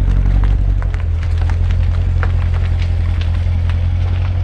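The C7 Corvette Grand Sport's V8 running with a steady, low exhaust rumble as the car rolls slowly at low speed, with no revving, and faint scattered ticks over it.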